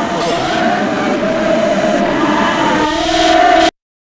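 A collage of many overlapping voices and chatter, like a sampled crowd recording, with a held tone swelling in about three seconds in. Everything then cuts off abruptly to silence just before the end.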